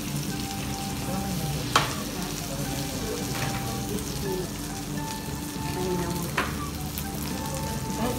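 Food sizzling and frying on the oiled grill ring of an electric shabu-shabu and grill pot, a steady hiss, with two sharp clicks, one a little under two seconds in and one past six seconds.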